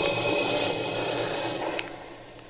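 Television documentary soundtrack heard from the TV's speaker: a steady rushing noise with a faint high whine running through it, which cuts off with a click near the end.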